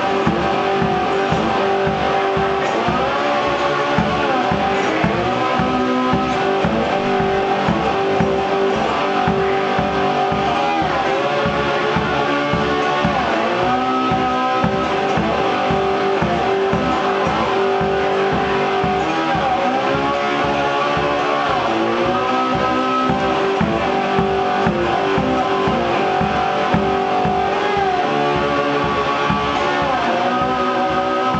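Homemade wine box guitar played slide-blues style in an instrumental passage. The melody glides up and down in pitch over a steady, quick low pulse.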